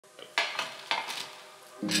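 Intro of an electronic music track: four sharp clinks and clicks in the first second or so, then a sustained low chord comes in near the end.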